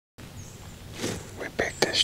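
A man whispering, beginning about a second in, with two sharp clicks shortly before the end.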